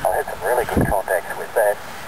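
A voice heard through an amateur radio receiver's speaker: single-sideband speech, thin and narrow in tone, in several short phrases and too indistinct to make out.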